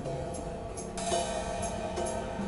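Live electric guitar, bass guitar and drum kit playing together: held guitar notes over a bass line, with hi-hat and a cymbal wash that swells about halfway through.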